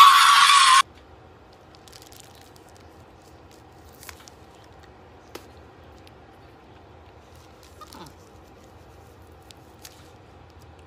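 A person's loud, high held scream that cuts off suddenly within the first second, followed by faint steady room hum with a few soft clicks.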